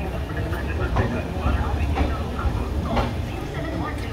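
LHB passenger coach rolling slowly on the track, a steady low rumble with a wheel knock over the rail joints about once a second. Voices are heard alongside.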